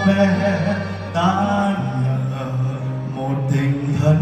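Live slow ballad played on saxophone and acoustic guitar under a man's singing voice, which holds long notes with vibrato over a steady bass.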